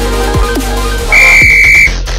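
Electronic dance music with a steady bass beat. About a second in, a single loud steady beep lasting just under a second rings over it: the workout interval timer's signal to start the next exercise.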